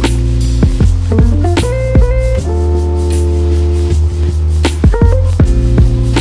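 Background music with a steady beat, sustained bass and melodic pitched notes.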